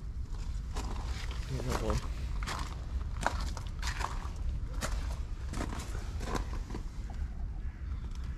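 Footsteps on a gravel path, about one step every 0.8 seconds, over a steady low rumble.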